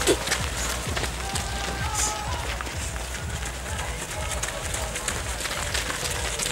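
Footsteps of a large pack of runners passing on a dirt path: a dense, irregular stream of footfalls, with scattered voices among them.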